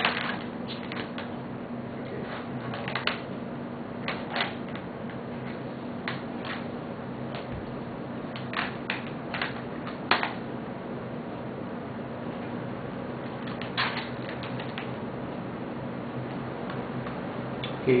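Scattered plastic clicks and knocks of a laptop battery being handled and tried against the netbook's battery bay, over a steady low electrical hum.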